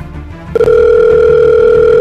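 A telephone tone, as on a phone held to the ear: one long, loud, steady electronic beep. It starts about half a second in and lasts just under two seconds, over background music.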